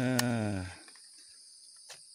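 A steady, high-pitched insect chorus, with a drawn-out spoken "ya" over it in the first second.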